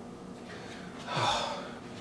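A man's short, audible breath in, about a second in, within an otherwise quiet pause between spoken lines.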